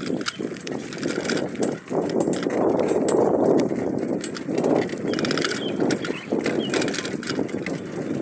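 A bicycle ridden along a paved road: wind rushing over the microphone with tyre noise, and scattered clicks and rattles from the bike.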